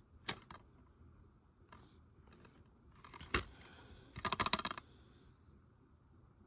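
Plastic DVD case handled and turned over in the hand. A light click comes about a third of a second in, then a sharper click about halfway, then a quick rattle of small clicks.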